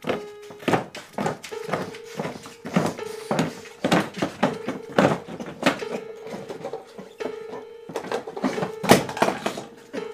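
Irregular knocks and clatters, a few a second, of a white plastic chair's legs banging on a concrete floor as a person in it thrashes, with the loudest knock about nine seconds in. A steady hum sounds underneath and drops out now and then.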